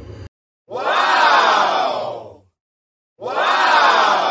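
Crowd shouting sound effect, played twice with a short silence between; each shout lasts about two seconds, swells and then fades away.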